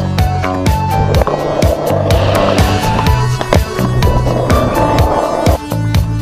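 Skateboard wheels rolling on concrete skatepark ramps, a rough rolling noise from about a second in until just before the end, under loud music with a steady beat.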